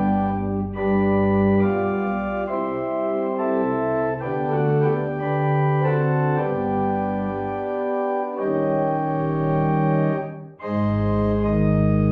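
Organ playing slow, held chords that change every second or so, with a brief break about ten and a half seconds in.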